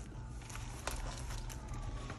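Paper money and a cash envelope being handled: a few light taps and paper rustles over a steady low hum.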